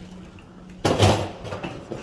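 A sudden clattering knock a little under a second in, fading over about half a second, as a rolling suitcase's wheels go over the elevator's metal door sill. A faint steady hum comes before it.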